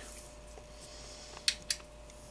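Two small sharp clicks a fraction of a second apart, about one and a half seconds in, from a hex driver and screw knocking against the chassis plate of a 1/5-scale RC car.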